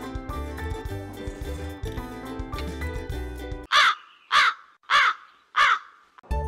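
Background music with a steady beat cuts off, then four loud, evenly spaced crow caws follow. They are an edited-in crow-caw sound effect marking an awkward comic pause.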